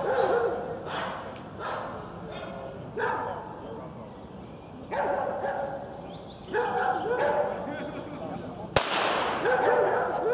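Short, loud calls every second or two, shouts mixed with dog barks, and a single sharp crack about nine seconds in.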